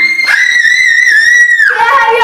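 Young girls screaming with excitement: one long, high, held scream, with a second voice joining briefly early on, then dropping to a lower-pitched yell near the end.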